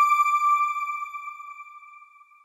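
A single electronic chime: one bright ping that holds a steady pitch and fades away over about two seconds, the sound of the TV channel's logo ident.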